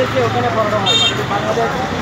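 Street noise: people's voices with a steady vehicle-engine hum, and a brief high-pitched toot about halfway through.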